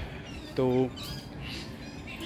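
Speech: a man says one short word about half a second in, over faint outdoor background noise.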